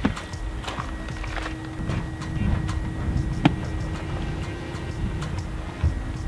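A few sharp clicks and knocks over a low, uneven outdoor rumble, with a faint steady hum underneath.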